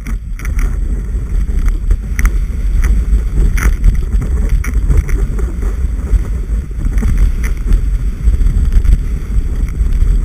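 Wind buffeting the microphone of a knee-mounted action camera during a powder ski run: a loud, steady rumble, mixed with the hiss of skis through snow. A few light taps sound now and then.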